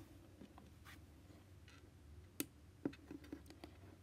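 Small plastic Lego pieces handled and pressed together on a tabletop: a few faint, short clicks, the sharpest a little past halfway and a quick cluster near the end, over very quiet room tone.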